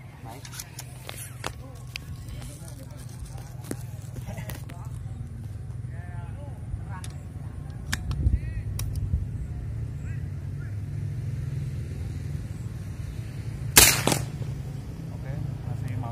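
A PCP air rifle fired once near the end: a single sharp crack, closely doubled, over a steady low rumble.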